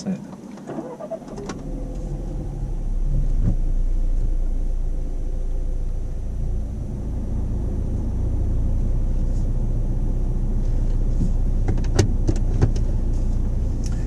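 Car pulling away from rest, heard from inside the cabin: a low engine and road rumble comes in and grows louder over the first few seconds, then holds steady as the car drives on. A few short clicks near the end.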